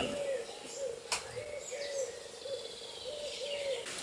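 A bird calling a repeated low hooting note, about two short notes a second, with a single sharp click about a second in.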